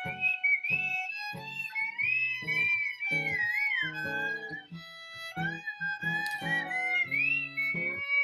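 Acoustic guitar strummed in chords under a fiddle melody that slides between notes.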